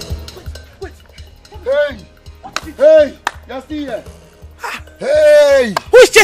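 A woman crying out in distress in short wailing cries, then one long loud wail near the end, over background music with a steady low beat.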